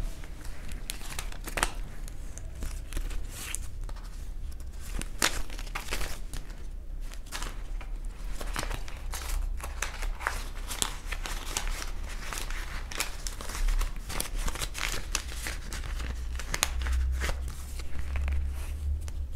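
Banknotes and a clear plastic zip pouch rustling and crinkling as cash is handled and put into the pouch, in many short crackles.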